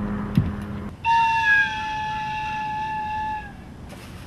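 A single held fife note, lasting about two and a half seconds from about a second in, wavering slightly in pitch at its start before settling.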